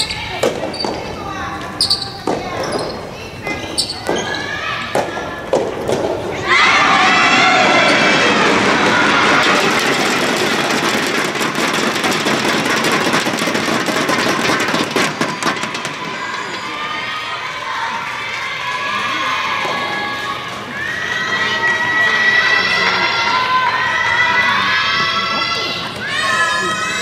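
Soft tennis rally: the rubber ball is struck by rackets and bounces on the floor in a string of sharp hits. About six seconds in the point ends and many voices break into loud cheering and shouting, which eases off after about ten seconds and swells again with more shouts near the end.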